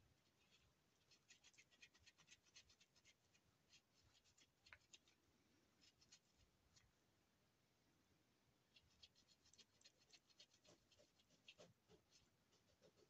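Faint quick scratching of a wet wipe being rubbed over a wood-mounted rubber stamp to clean off the brown ink, in two bouts with a pause of a couple of seconds between them.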